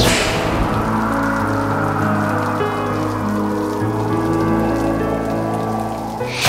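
Steady rain with a sustained, slow music score beneath it, opening with a falling swish.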